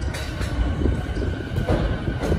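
JR East 209-series electric commuter train pulling into the platform: a steady low rumble of the running gear, with a few sharp wheel clacks over the rail joints and a faint steady whine.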